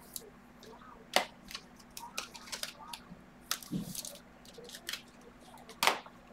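Trading cards handled and laid down on a table: scattered light taps and clicks of card stock, with three sharper clicks spread through and a short low knock a little past halfway.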